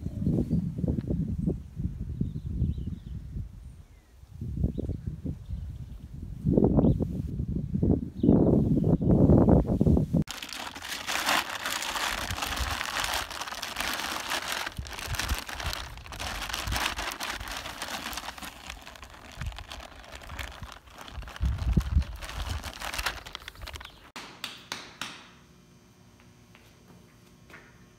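Low rumbling noise for the first ten seconds. Then a crinkly bag crackles steadily as it is rubbed over a young donkey's back, until shortly before the end.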